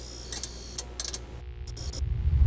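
Outro sound effect: irregular clicks and ticks over a thin high whine that cuts in and out, with a low hum underneath.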